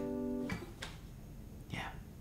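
Acoustic guitar G major triad ringing and fading, damped about half a second in with a soft click from the strings.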